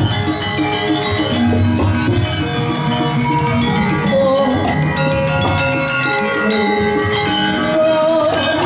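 Javanese gamelan playing: tuned metal percussion and low tones ringing in many overlapping, sustained notes.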